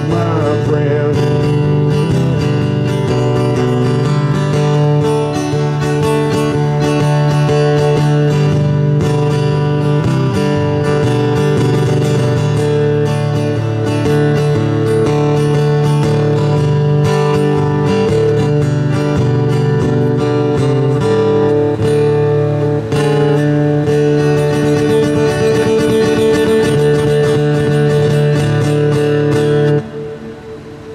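Acoustic guitar strummed steadily, stopping right at the end as the song finishes.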